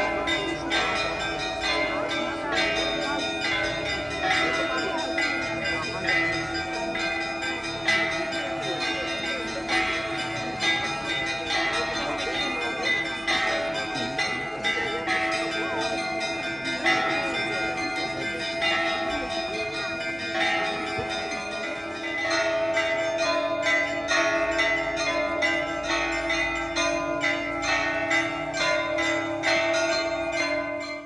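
Orthodox church bells pealing: many bells struck in quick, continuous succession over the lasting ring of the larger bells, a little louder about two-thirds of the way through.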